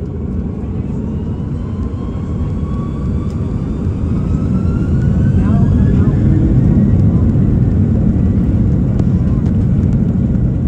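Airbus A330 cabin sound heard from a window seat: the jet engines run over a steady low rumble, with a whine that rises in pitch and grows louder over the first half as thrust is increased while the airliner taxis. It then holds steady.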